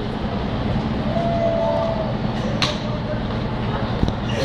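Steady low rumble of city street traffic with a running engine. A brief steady whine comes in about a second in, and a single sharp click follows a little after two and a half seconds.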